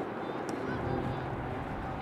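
A few short honking calls over steady outdoor background noise, with one brief sharp click about half a second in.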